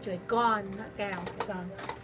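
A woman's voice in a few short phrases that rise and fall in pitch, over a held piano chord that dies away about a second in.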